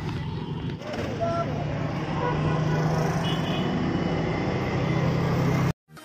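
A motor vehicle's engine running at a steady hum amid road and traffic noise, with a few faint short horn-like tones in the middle. The sound cuts off abruptly just before the end.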